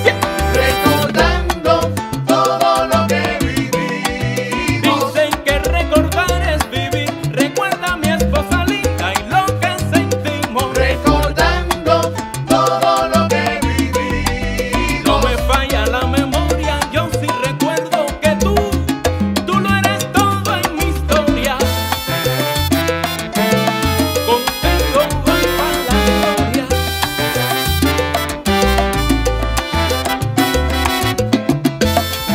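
Salsa music played by a Latin band, in an instrumental passage without singing.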